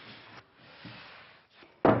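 Faint handling and rustling noise with a light knock about a second in, then a woman's voice starts loudly near the end.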